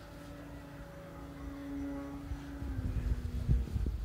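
Balsa RC P-51 model's motor and propeller droning overhead: one steady tone that swells about halfway and then drops a little in pitch as the plane passes. Wind rumbles on the microphone, strongest near the end.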